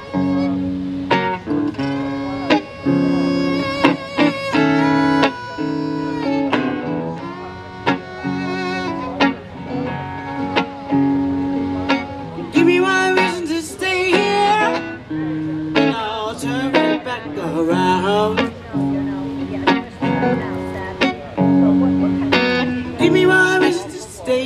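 A violin and a guitar playing an instrumental break: the violin carries the lead with sliding, wavering notes, strongest in the middle, over the guitar's repeating chords.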